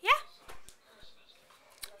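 A short, high yelp rising sharply in pitch, followed by a few light clicks.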